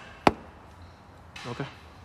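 A single sharp tap on a camshaft bearing cap, knocking it down to seat centred on the cylinder head.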